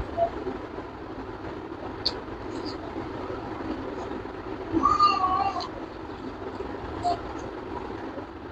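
Eating by hand, chewing with a few short, sharp mouth clicks, over a steady background noise. A cat meows once about five seconds in.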